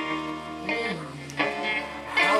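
Live band music: a harmonica playing over electric guitar and bass guitar, with some bent, gliding notes.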